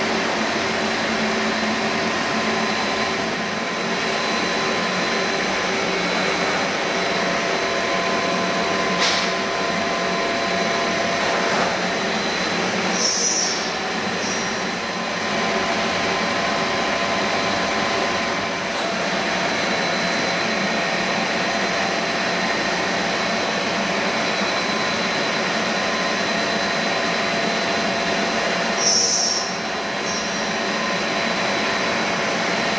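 Machinery of a PVC pipe extrusion line running: a steady mechanical hum and hiss with several constant tones. A brief high chirp sounds twice, about midway and near the end.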